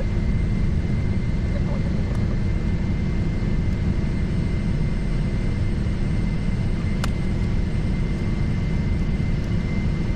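Cockpit noise in a taxiing Gulfstream G650: a steady low rumble from the idling jet engines and airflow, with a thin steady high tone. A single sharp click comes about seven seconds in.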